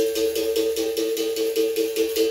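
Berimbau being played: its steel string struck with a stick in a quick, even rhythm of about four to five strokes a second, sounding a twanging two-note drone, with the caxixi rattle shaking on each stroke.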